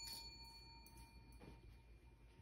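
A small bell's ringing dies away over the first second or so, leaving near silence.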